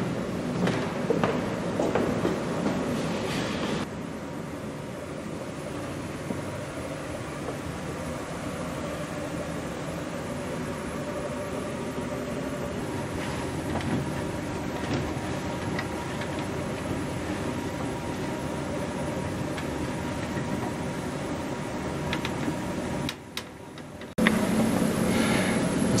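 A wooden door being opened, then footsteps and knocks climbing a wooden ladder inside a pipe organ's case, over a steady rumble. Near the end a steadier hum sets in.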